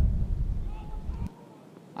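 Low rumble of wind on an outdoor microphone, fading and then cutting off abruptly a little over a second in.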